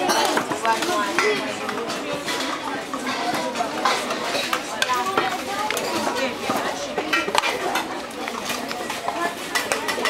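Many children's voices chattering at once over a meal, with scattered clinks of metal cups and cutlery against plates.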